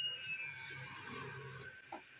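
Faint night ambience of insects chirring in a steady high pitch, with a few faint falling whistle-like tones in the first second.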